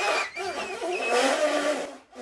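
Clarinet being played unsteadily: a high squeaky note at the start, then lower wavering notes.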